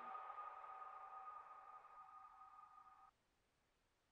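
The last held electronic tones of the track fading out, two steady pitches, then cutting off suddenly about three seconds in.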